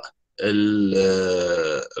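A man's voice holding one long, steady hesitation sound, a drawn-out "uhh" at a low, even pitch lasting about a second and a half, mid-sentence. It begins after a brief moment of dead silence.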